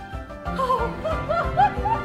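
Film-score music with a steady low pulse and, from about half a second in, a high wordless melody of short curling notes over it.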